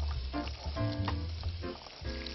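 Carrot slices dropping into hot oil in a frying pan, the oil sizzling as they go in, with background music playing.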